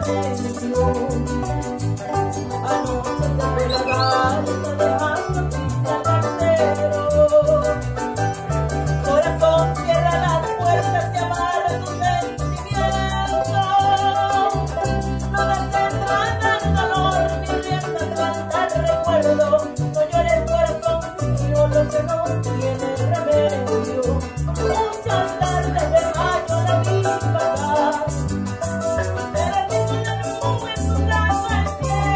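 A small live band playing Latin American folk music: a small four-string guitar is strummed over a steady electric bass line, with a shaker-like rattle in the rhythm.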